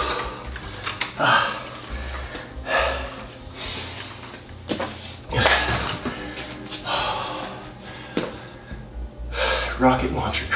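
A man breathing hard after a set of dumbbell presses, with heavy breaths coming about every one to one and a half seconds.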